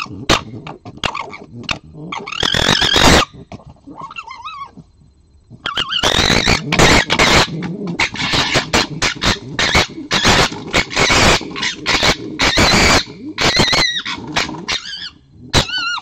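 Red foxes squabbling: harsh rapid gekkering chatter mixed with high wavering squeals. There is a short loud burst about two to three seconds in, then a long loud run from about six seconds to nearly the end, with one last cry at the close.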